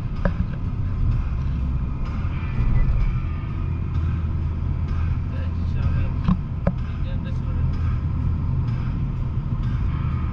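Steady low drone of engine and road noise inside the cabin of a Mitsubishi Lancer Evolution X cruising on a road, with a few sharp clicks near the start and a pair about two-thirds of the way through.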